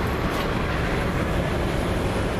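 Steady, loud rumble of a vehicle passing on the street, with a faint high whine falling slightly in pitch in the second half.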